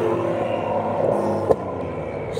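Car engine running steadily at low revs, with a sharp click about a second and a half in.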